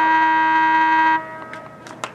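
Stadium scoreboard horn sounding one long, steady blast of about a second and a half that cuts off abruptly, signalling the end of the half.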